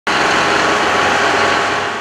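A dump truck's engine running steadily at idle, loud and unchanging, with no separate knocks or thuds.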